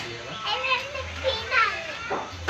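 A toddler babbling, its high voice sliding up and down in pitch.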